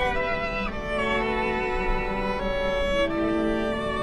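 String quartet of violins, viola and cello playing a slow passage of held, bowed notes that change pitch every half second to a second.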